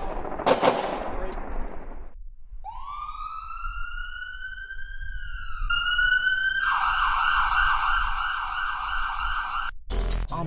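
Siren sound effect: after about two seconds of noisy bangs, a wail rises in pitch and holds, then switches to a fast warbling yelp that cuts off just before the end.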